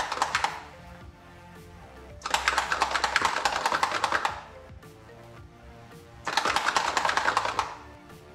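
Small bottle of airbrush paint shaken hard in three bursts of rapid rattling clicks, the first at the very start, the second about two seconds in and the third near the end, over background music.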